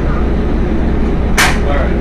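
Steady low machine rumble of Generac industrial generator sets running, with a short hiss about one and a half seconds in.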